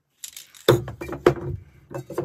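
Aerosol spray paint can being handled: a light rattle, then two louder knocks with a short low ring, about two-thirds of a second and a second and a quarter in.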